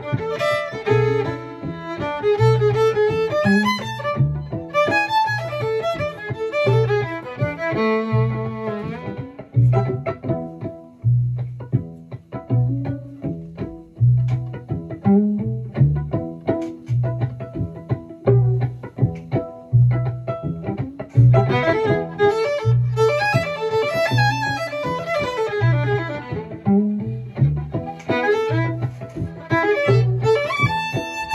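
Solo violin playing improvised fiddle lines in E over a backing track with a steady, repeating bass groove. The fiddle plays for roughly the first nine seconds, drops out for about ten seconds while the groove carries on alone, leaving a gap for a call-and-response reply, and comes back in about 21 seconds in.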